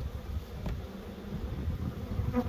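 Honeybees buzzing in a steady hum around opened hive boxes.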